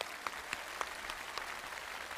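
Audience applauding: many hands clapping at a steady level.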